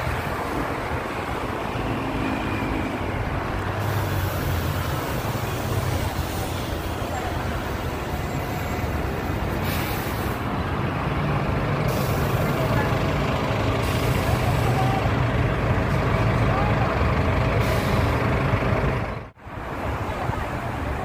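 City street traffic: vehicles running past with a steady low engine hum. The sound drops out suddenly for a moment near the end.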